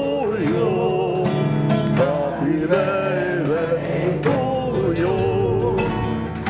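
Men singing a song to their own acoustic guitars, the guitars strummed in a steady rhythm under a wavering sung melody.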